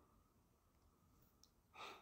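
Near silence, broken near the end by one short breath from the speaker.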